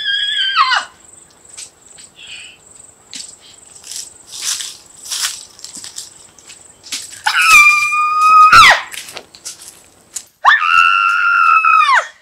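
Three long, high wailing cries, each held at one pitch for about a second and a half, the first at the very start, the second about seven seconds in and the third near the end, with light rustling between them.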